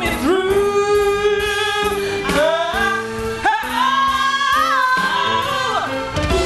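A woman singing solo into a microphone over musical accompaniment in a gospel-R&B ballad, wordless ad-lib runs with long held, wavering notes and sliding melismas.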